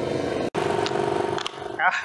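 Yubao oil-free air compressor running with a steady hum, cutting out for an instant about half a second in and dying down near the end.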